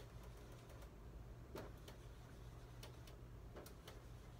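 Dry-erase marker drawing notes on a whiteboard: a handful of faint, brief ticks and strokes as the tip meets the board, over a low steady room hum.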